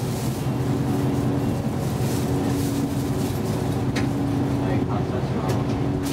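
City bus diesel engine running with a steady low hum, heard from inside the passenger cabin, with a couple of brief clicks or rattles from the bus about four and five and a half seconds in.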